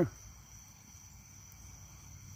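Crickets calling in a steady, faint, high-pitched trill.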